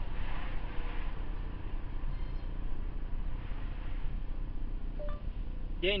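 Steady low rumble of road and engine noise inside a moving car, with a brief faint tone about five seconds in.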